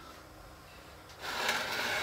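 A Beall wood-threading tap turned by hand, cutting threads into a walnut support piece. A scraping rasp of the cutter in the wood starts about a second in, after a quiet moment.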